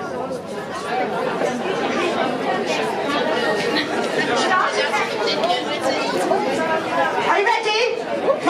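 Many voices chattering at once in a large hall: a crowd of women talking among themselves, steady and overlapping, with no single voice leading.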